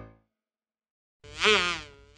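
The last note of the song's music dies away, then after a short silence a buzzy sound effect with a wobbling pitch swells about a second in and fades near the end.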